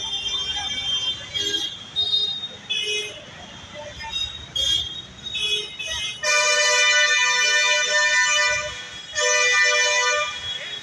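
Vehicle horns honking in dense, slow street traffic: several short toots in the first half, then a long, loud horn blast held for over two seconds starting about six seconds in, and another one about a second later, over a low rumble of engines.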